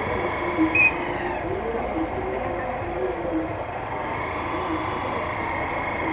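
Small motorcycle engine running at low speed as the bike rolls slowly through traffic, with faint voices in the background.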